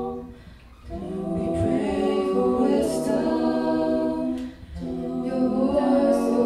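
Mixed-voice a cappella ensemble of men and women singing into microphones, holding sustained chords in close harmony. The singing dips briefly between phrases, once just after the start and again about three-quarters of the way through.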